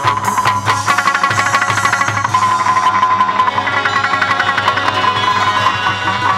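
Chầu văn ritual music: a plucked đàn nguyệt moon lute playing over percussion that keeps a quick, even beat, with one high note held for several seconds.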